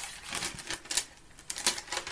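Pages of a Bible being flipped through: a quick, irregular series of short paper rustles and clicks.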